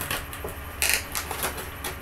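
Stiff clear plastic blister packaging handled and flexed in the hands, giving a few crackles and clicks. The sharpest crackle comes a little under a second in.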